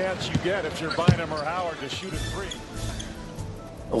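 Basketball game sound: a ball bouncing on the court with voices over it, then a low pulsing music beat from about halfway through.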